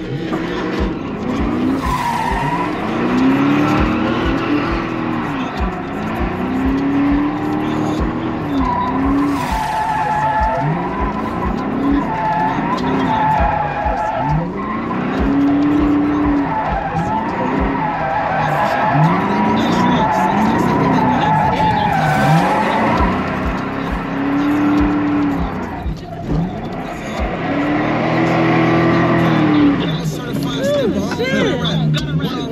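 A car engine revving up and down in repeated swells, about one every two seconds, with tyres skidding and squealing: a car doing donuts at a street sideshow. Crowd voices run underneath.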